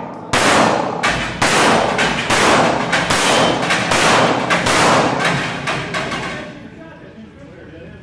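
A rapid string of handgun shots, about nine in six seconds, fired at steel plate targets that are knocked down, each shot echoing off the concrete baffles of an indoor range. The firing stops about six seconds in and the echo dies away.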